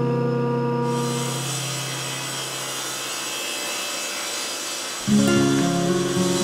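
Table saw ripping a narrow strip of red oak, a steady hiss of cutting that begins about a second in. Acoustic guitar music plays over it, fading early on and coming back in near the end.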